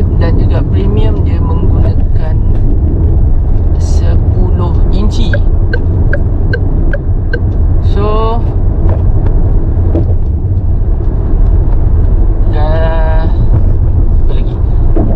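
Steady low rumble of road and engine noise inside the Proton X50's cabin while it drives, with a short run of light, evenly spaced ticks, about two or three a second, midway through.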